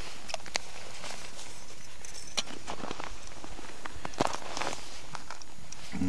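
Irregular crunching and clicking of packed snow and ice as a person crouched on a frozen lake shifts about and handles ice-fishing tackle, with no steady rhythm.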